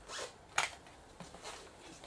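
Handling noise from a circuit board being moved about: a few short rustles and scrapes, with one sharp click a little after half a second in.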